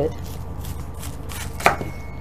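Kitchen knife cutting through a raw green cabbage quarter on a wooden cutting board, slicing the core out, with soft cutting strokes and one sharper knock near the end.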